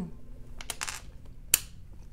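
Small plastic clicks and a brief rattle of LEGO bricks being handled, with one sharp click about one and a half seconds in.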